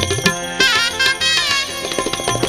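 Shehnai playing a melody with bending, wavering ornaments over steady dholak and tabla drumming, in Indian folk devotional music.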